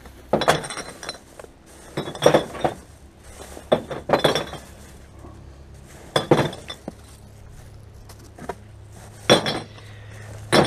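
Glass bottles clinking and clattering against each other in a wheelie bin as they are handled, in about five separate bursts a second or two apart.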